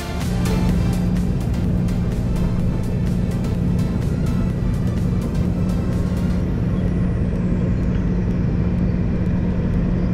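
Case CX210D excavator's diesel engine running steadily, heard from inside the cab as a constant low drone. Background music plays over it and fades out about halfway through.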